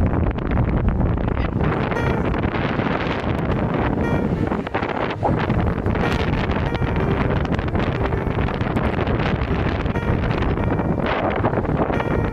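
Steady wind blasting the phone's microphone, with rumbling road noise, from a moving vehicle.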